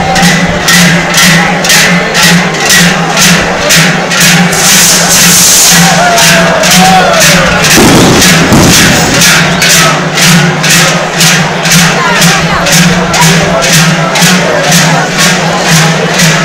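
A troupe of joaldunak ringing the large cowbells (joareak) strapped to their backs in unison as they march: a loud, steady clanging of about two to three strokes a second. There is a louder thump about eight seconds in.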